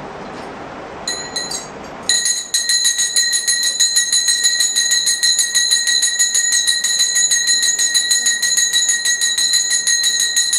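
Puja hand bell struck a few times, then rung rapidly and without a break from about two seconds in, a bright, high metallic ringing. Before the ringing takes over there is a steady rushing noise.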